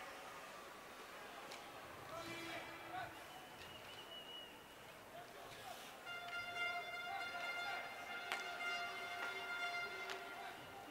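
Faint ice-hockey arena sound: a few sharp stick-and-puck knocks over low crowd noise. From about six seconds in, a steady held musical note sounds over it.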